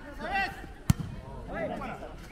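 A volleyball struck once by a player's hands during a rally, one sharp hit about a second in.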